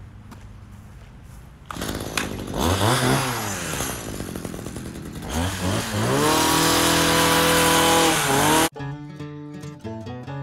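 Stihl HS 45 hedge trimmer's small two-stroke engine running, revved up once and let back to idle, then revved again and held at full throttle for about two and a half seconds before it cuts off abruptly. Acoustic guitar music takes over in the last second.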